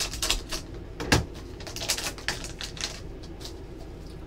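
Foil trading-card pack being opened by hand, the wrapper crinkling and tearing in a run of crackly clicks, with one sharper click about a second in, then quieter handling of the cards.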